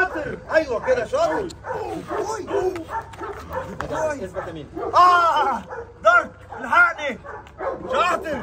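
A dog barking and yipping repeatedly in short, rapid calls, loudest about five seconds in.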